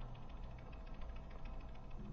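Faint, steady low rumble of outdoor background noise, with a light hiss above it and no distinct event.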